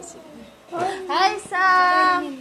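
A high-pitched voice calling out in a sing-song way: a quick rising sweep about a second in, then a long held note near the end.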